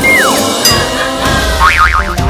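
Upbeat title jingle for a comedy segment, with a cartoon sound effect that glides quickly down in pitch right at the start and a fast wobbling warble near the end.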